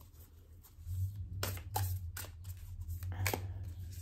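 A deck of oracle cards being handled and shuffled, with a few sharp card clicks and slaps over a low rumble.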